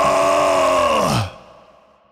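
A held, heavily processed voice-like note with strong overtones closing an industrial remix; about a second in its pitch slides down, like a tape-stop effect, and it fades out to silence.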